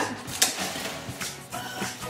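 Plastic cling wrap being pulled out of its cardboard box, crinkling, with a few sharp clicks from the box and film.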